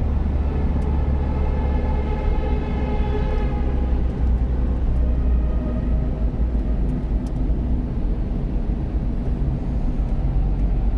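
Steady low road rumble of a car's tyres and engine, heard from inside the cabin while driving through a road tunnel. A faint whine rides on top for the first few seconds, then fades.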